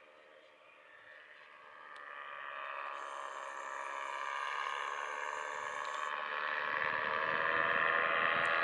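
Paramotor engine and propeller droning in flight, growing steadily louder as it comes closer overhead. Wind rumbles on the microphone near the end.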